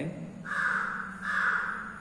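A bird cawing twice, two harsh calls each about half a second long.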